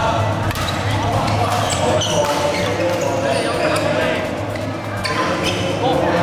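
Badminton play in a hall: sharp racket strikes and footfalls on the court come at uneven intervals, over a steady murmur of spectators' voices.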